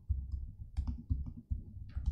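Typing on a computer keyboard: irregular key taps, several a second, each with a dull low thud.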